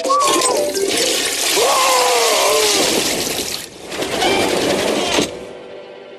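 Pull-chain toilet flushing: a loud rush of water in two surges, with a short dip between them. It cuts off suddenly a little after five seconds in.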